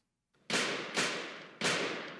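Three gunshots from a film soundtrack, about half a second apart, each trailing off in a ringing echo.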